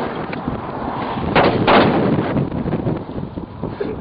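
Two gunshots in quick succession about a second and a half in, over steady wind noise on the microphone.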